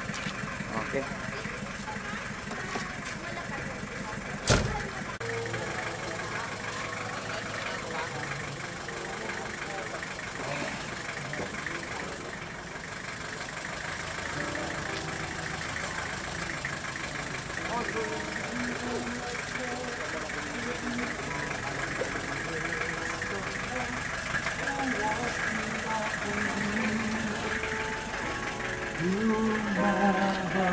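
Vehicle engine running slowly, with people talking around it. A single sharp knock about four and a half seconds in.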